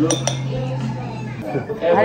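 Tableware clinking: two quick clinks a fraction of a second apart, each ringing briefly, like a ceramic spoon against a dish.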